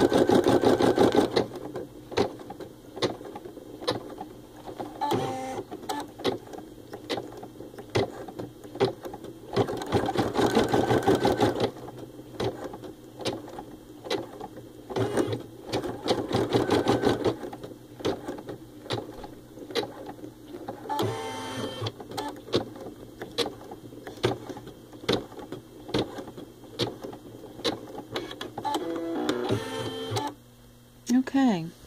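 Baby Lock Ellure Plus embroidery machine stitching out a design, its needle punching through the fabric in a fast, steady clatter that grows louder in several short spells.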